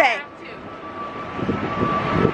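Busy city street noise: a steady hum of traffic with a faint held tone, and a low rumble coming in about a second and a half in.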